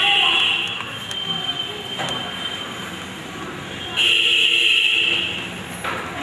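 A loud, steady high ringing tone sounds twice: once for about the first second, trailing off faintly, then again for about a second and a half from four seconds in. Crowd chatter runs underneath.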